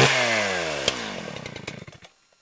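A small engine blipped at the start, its revs then falling away steadily and fading out until it stops near the end. There is a single sharp click about a second in.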